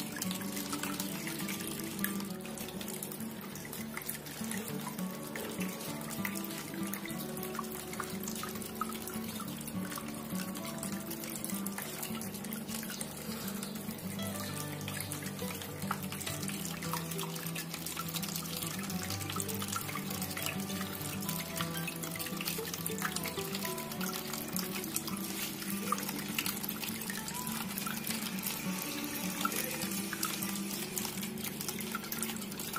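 Water trickling and splashing steadily from the spouts of a tiered bowl fountain into the bowls below, with many small drips and splashes, under soft background music with long held notes.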